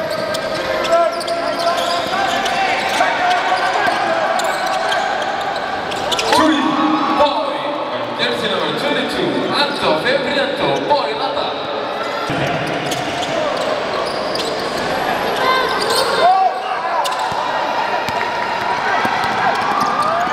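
A basketball dribbled on a hardwood court in a large indoor hall, with voices calling out throughout and short sharp knocks scattered through.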